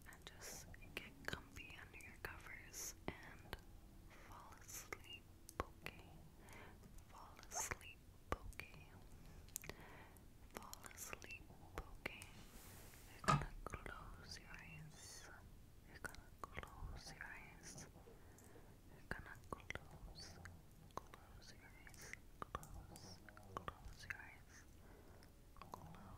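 Long acrylic nails clicking and tapping against each other close to a microphone: many quiet, sharp, irregular clicks, with one louder knock about halfway. Soft whispering and mouth sounds run between the clicks.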